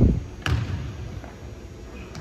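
Basketball bouncing on a hardwood gym floor: two bounces, a loud one at the start and another about half a second in.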